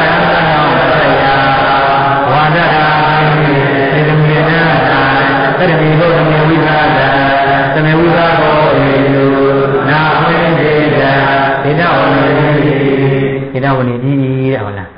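Chanted recitation: a voice, or voices in unison, intoning long held notes in a steady, low monotone, breaking off near the end.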